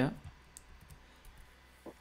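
A few faint clicks of a computer being used to edit text, in a quiet stretch after the tail of a spoken word at the start; one slightly sharper click comes near the end.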